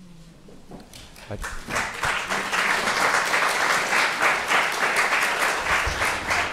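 Audience applauding: it starts faintly about a second in, swells, and then holds as steady clapping.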